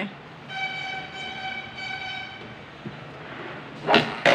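A horn sounding for about two seconds: one steady high tone with a brief break partway through. Near the end comes a short, loud rush of noise.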